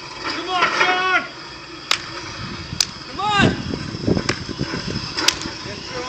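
Plate-loaded push sled grinding along asphalt as it is driven, with sharp knocks about once a second in the second half. Loud shouts of encouragement come about a second in and again near the middle.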